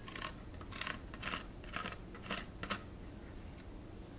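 Plastic scraper dragged over a plastic capsule-filling tray, sweeping excess powder off it. About six short, quiet scrapes come in the first three seconds, then it goes quieter.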